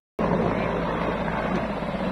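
Helicopter in flight, a steady rotor and engine noise that starts abruptly just after the beginning.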